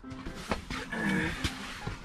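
A short wordless vocal exclamation with bending pitch, with a few sharp knocks from people shifting and getting up inside the shelter.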